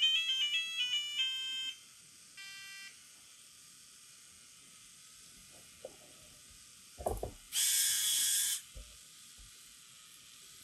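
Small electronic buzzer on a micro:bit robot car playing a quick run of stepping beeps that stops about two seconds in, then one short beep. Near the end come a couple of low knocks and a single buzzy tone held for about a second.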